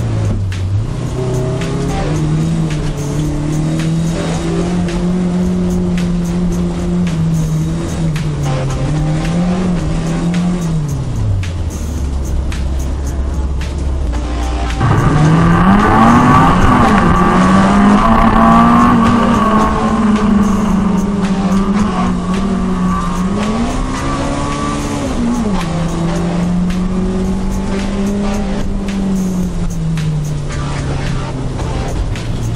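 A car engine accelerating and backing off through an autocross course, its pitch rising and falling with the throttle. About twelve seconds in, the engine note drops to a low drone for a few seconds, then picks up louder with tires squealing through the corners, typical of a car that understeers badly.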